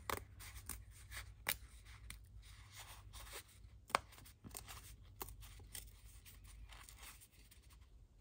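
Paper scrapbook pockets being torn by hand along their perforations: faint small crackling ticks and rips, with sharper snaps about a second and a half and four seconds in.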